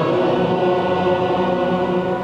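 Choir singing held notes of a vespers chant, echoing in a large cathedral.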